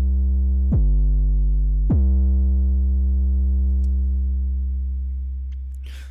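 808-style sub-bass sample played from the Waves CR8 software sampler. New notes start about three-quarters of a second in and again near two seconds, each opening with a quick downward pitch drop. The last note then holds a steady low tone while the sample loops at its loop point, fading slowly toward the end.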